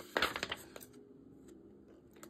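A sheet of card-weight patterned paper rustles briefly as it is picked up and bent. A couple of faint clicks follow as scissors are brought to its edge.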